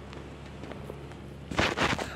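Handling noise of a phone being moved about: a low rumble on the microphone, then a short loud burst of rubbing and crackling near the end.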